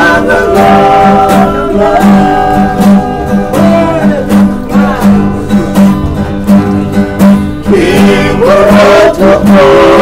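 Several men singing together to two strummed acoustic guitars, with a steady strumming rhythm under the voices.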